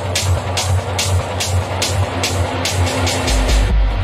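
Techno playing in a DJ mix, with a steady driving beat and crisp percussion on top. A little past three seconds in a deep bass comes in, and just before the end the high end cuts out, as in a DJ transition worked on the mixer's EQ.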